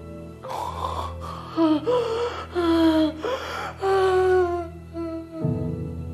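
A woman's drawn-out vocal cries, several in a row, each sliding down in pitch, over a steady film score of sustained tones; a deeper note comes into the music near the end.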